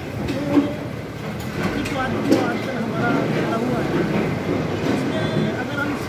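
A man speaking in Hindi, answering an interview question into a handheld microphone, over a steady low background hum.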